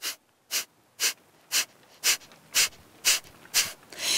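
A woman's forceful exhalations through the nose in kapalabhati breathing, the diaphragm pumping the breath out in short, sharp bursts: eight even puffs, about two a second.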